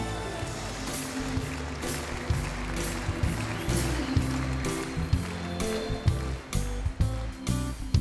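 Band playing the instrumental introduction to a Danish schlager song: a moving bass line under sustained chords, with sharp drum strikes through it, leading into the vocal.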